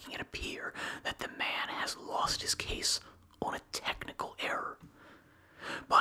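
A man whispering close to the microphone, reading aloud in a steady run of phrases, with a brief pause near the end.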